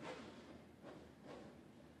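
Near silence, with a few faint, brief sounds.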